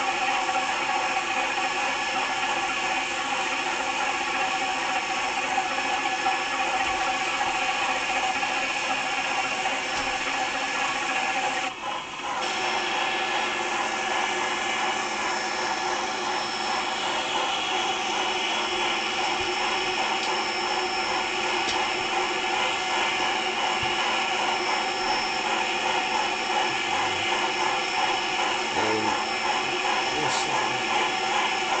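Motorized toy train's small electric motor and plastic gears whirring steadily, with a brief drop about twelve seconds in.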